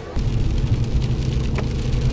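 Cabin noise of a car driving on a rain-wet road: a steady low road rumble with the hiss of rain and tyre spray. It starts abruptly just after the start.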